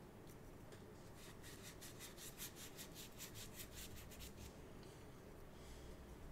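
Ink brush working back and forth on paper, a faint rapid run of scratchy strokes, about six a second, from about a second in until past the middle.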